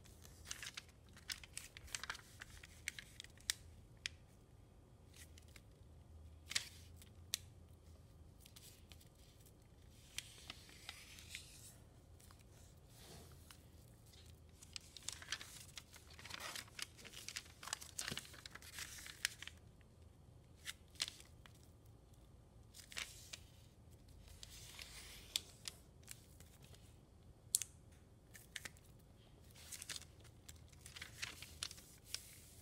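A sheet of metallic foil origami paper being folded and creased by hand: quiet crinkles and sharp taps scattered throughout, with a few longer rustling sweeps as folds are pressed flat.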